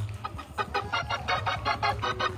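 Hammond organ playing a fast run of short, repeated staccato chords over a steady low bass, in the quick shout-music style of a praise break.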